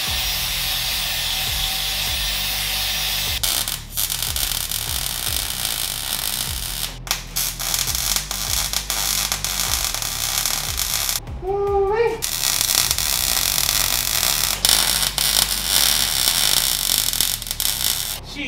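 Angle grinder grinding metal with a steady high whine that turns rough and scratchy as it bites, throwing sparks. It stops briefly about eleven seconds in, then grinds again until near the end.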